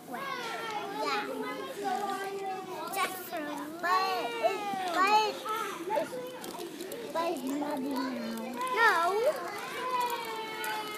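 Young children chattering, their high voices rising and falling in pitch with no clear words.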